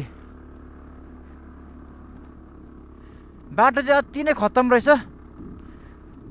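Aprilia two-wheeler's engine running steadily while riding a rough gravel track, with a man's voice speaking briefly about halfway through, louder than the engine.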